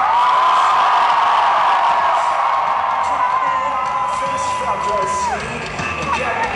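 A male singer's voice through the PA holding one long high note for about five seconds, sliding up into it and falling off near the end, over a crowd cheering and whooping.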